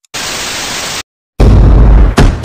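A burst of hissing static lasting under a second that cuts off abruptly. After a short silence, a very loud, bass-heavy sound begins: the start of an outro music track.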